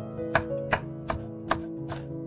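Chef's knife slicing a red bell pepper into thin strips on a wooden cutting board: six evenly spaced knocks of the blade against the board, about two and a half a second.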